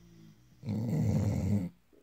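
Sleeping pit bull snoring: one loud, rough snore about a second long, starting just over half a second in, after a faint pitched breath.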